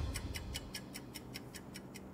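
Clock-ticking sound effect in a news intro sting: quick, evenly spaced ticks, several a second, as the low notes of the intro music die away.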